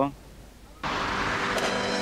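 A motor vehicle's engine and road noise, starting suddenly about a second in and holding steady.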